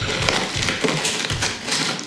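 Small rocks of potting substrate crunching and grinding in a plastic plant pot as hands press a root ball down into them, a dense run of crackles.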